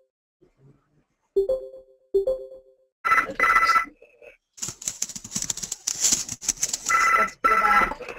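An electronic telephone ringtone heard over a conferencing audio line: two soft chime notes early on, then pairs of short two-tone electronic bursts, once about three seconds in and again near the end, with a stretch of hissy line noise between them.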